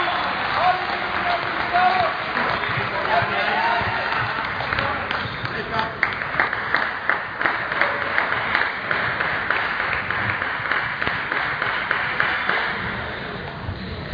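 Murmur of voices in a large sports hall, then a spell of scattered hand clapping: many quick, sharp claps from several people through the middle and later part.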